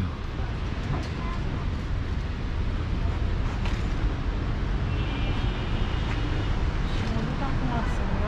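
Steady city street background noise, mainly a low traffic rumble, with faint voices near the end.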